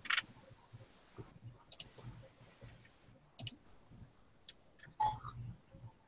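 A few sparse, sharp clicks, about five spread over several seconds, against a faint background.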